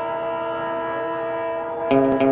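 A train horn holding one long, steady chord of several tones over a faint rumble.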